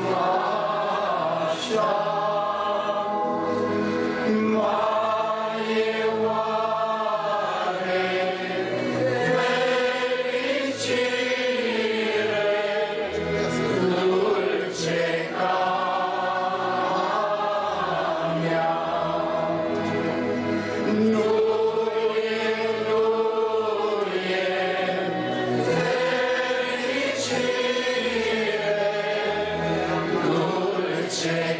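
A large group of men and women singing a slow Christian hymn together in long, drawn-out sung lines.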